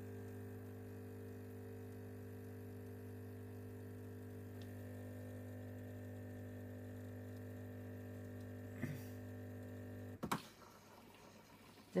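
Breville Barista Express (870XL) espresso machine running its cleaning cycle: its pump hums steadily and evenly, then cuts off with a click about ten seconds in.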